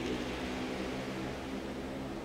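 Room tone: the steady hum and hiss of a fan running.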